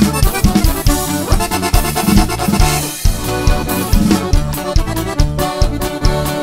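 Norteño band playing an instrumental stretch of a corrido: accordion carrying the melody over electric bass, guitar and a drum kit keeping a steady beat.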